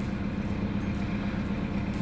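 A steady low mechanical hum with one constant low tone, like an engine running.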